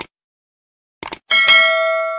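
Subscribe-button sound effect: a quick double mouse click, another double click about a second later, then a bright notification-bell ding that rings with several clear tones.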